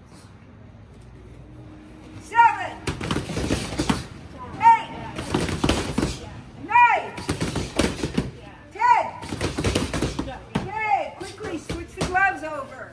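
Boxing gloves smacking focus mitts in quick flurries of about a second, starting about two seconds in and repeating every two seconds or so, each flurry led by a short high-pitched shout.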